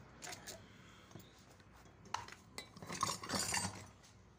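Metal tools and pump parts clinking and knocking against each other during hands-on work on a water pump motor: a few separate sharp clinks, then a quicker cluster near the end.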